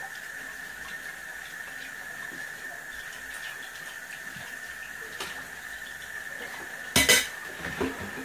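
Dishes being washed by hand in a kitchen sink: tap water running steadily, with small clinks of dishes, then one loud clatter of dishes about seven seconds in.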